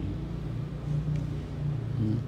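A low, steady background rumble with no words over it.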